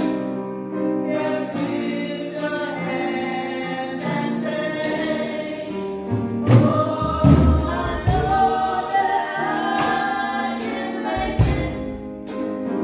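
Gospel praise-team singing: women's voices in harmony over sustained keyboard chords, with a few deep low notes around the middle and near the end.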